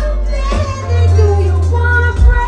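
Female R&B singer singing live into a microphone over a band with keyboards, drums and a strong, steady deep bass.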